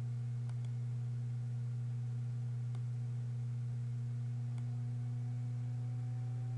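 Steady low electrical hum, one constant tone with overtones, with three faint mouse clicks spread through it.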